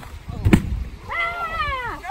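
A heavy thud about half a second in as a man lands hard in beach sand, followed by high-pitched cries that slide downward in pitch.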